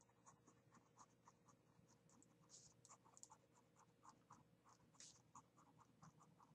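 Near silence, with many faint, irregular scratching ticks.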